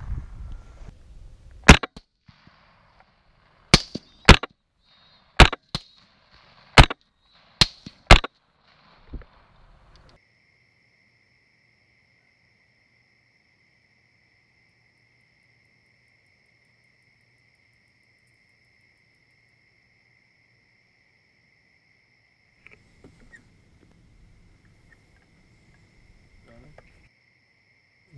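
Rifle shots fired in quick succession, about nine sharp cracks over some seven seconds, some barely half a second apart. After them comes a faint steady high-pitched tone.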